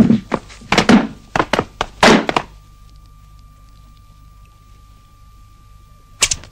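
A rapid series of thuds and whacks, about eight blows in the first two and a half seconds, then only a faint steady hum.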